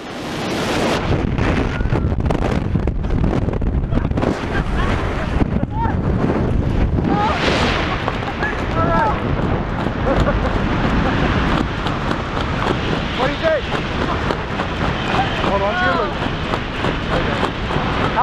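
Loud, steady rush of air buffeting the camera microphone during a tandem skydive freefall, with faint shouts breaking through the wind now and then.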